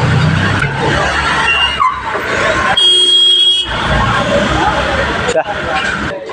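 People's voices over a steady, noisy background. A vehicle horn sounds once for under a second about three seconds in.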